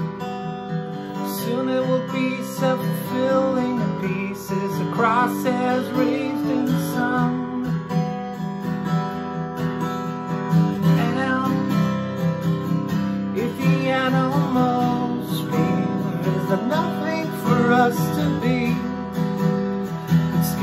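Acoustic guitar strummed steadily in chords, an instrumental stretch of a song.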